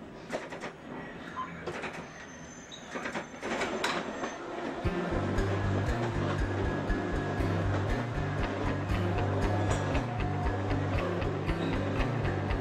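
London Underground train running in a tunnel, with scattered clicks and rattles over a low rumble. About five seconds in, a guitar-based rockabilly backing starts with a steady beat and a repeating low bass line, and from then on it is louder than the train.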